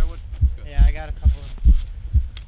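A fast heartbeat sound effect: deep, evenly spaced thumps about two and a half times a second, with a wavering voice-like tone over them about halfway through.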